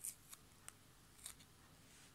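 Faint crisp ticks of metal tweezers and a small paper cut-out handled and pressed onto a journal page, about four in two seconds, the first the loudest.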